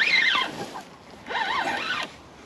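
Spinning reel being cranked to wind in a hooked fish, its gears whirring in two bursts whose pitch wavers with the speed of the handle.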